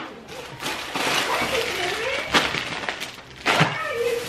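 Thin plastic shopping bag and snack wrappers crinkling and rustling as packages are pulled out, with several sharp crackles.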